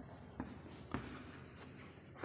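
A stick of chalk writing on a blackboard: faint scratching of the strokes, with a few light taps as the chalk meets the board in the first second.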